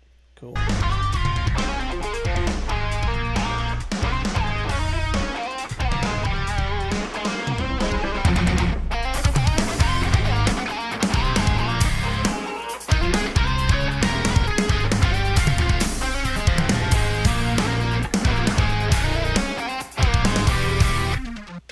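Instrumental progressive metal recording: heavy, tightly played electric guitar with bass and drums. It starts about half a second in and breaks off briefly a few times between hits.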